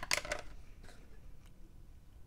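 A few light clicks and rattles, clustered in the first half second, as the plastic-housed body control module and fuse box is handled and turned over.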